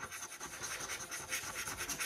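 A 50p coin scratching the silver coating off a National Lottery scratchcard in quick, short strokes.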